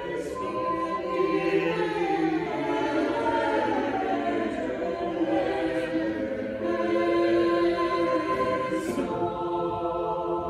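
Church choir of mixed men's and women's voices singing, moving through long held chords under a conductor's direction.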